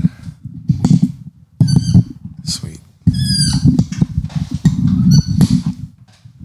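A podcast microphone being handled and repositioned on its mount: loud irregular low rumble and thuds on the mic, with three short high squeaks from the mount.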